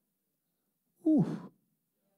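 A man's short, breathy "ooh" into a microphone, about a second in, falling in pitch and lasting about half a second.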